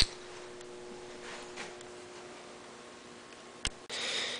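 Quiet room tone with a faint steady hum, broken by a sharp click right at the start and a second, smaller click near the end.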